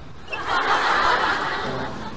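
Sitcom laugh track: a crowd's canned laughter swells about half a second in and fades away, with background music entering near the end.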